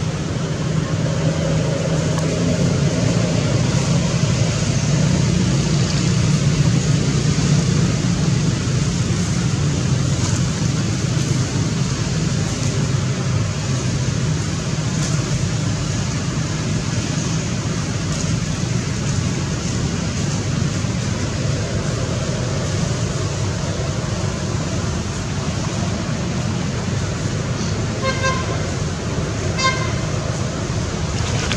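Steady vehicle-traffic noise with a constant low hum. Near the end come two short pitched toots.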